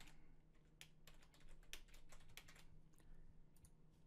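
Faint computer keyboard typing: a scatter of light, irregular key clicks.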